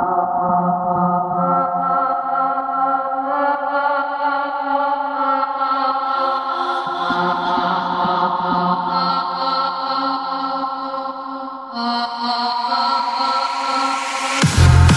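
Minimal techno breakdown: sustained droning chords with no drum beat. The chord changes about halfway through and again near the end, growing slowly brighter, just before the beat drops back in.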